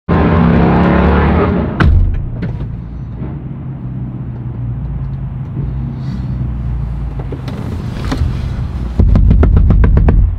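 Low, steady vehicle rumble with a few sharp knocks. It is loudest in the first two seconds and again near the end.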